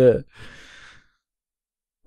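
A man's short, faint breathy sigh just after a spoken "yeah", then dead silence for about a second.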